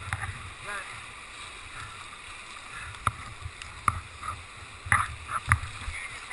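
Whitewater rapids rushing around a kayak, with several sharp knocks in the second half.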